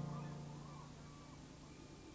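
The last piano chord of a music passage dying away, with faint high bird calls gliding over it during its first second or so.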